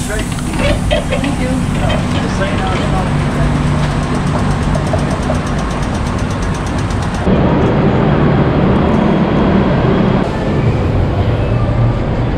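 A vintage tram running, heard from inside the car: a steady rumble and rattle with voices in the background. About seven seconds in it changes abruptly to louder, lower street noise beside the tram at the stop.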